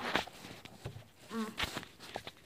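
Handling noise from a camera being fumbled and repositioned: scattered light clicks and knocks, with a short hummed vocal sound about one and a half seconds in.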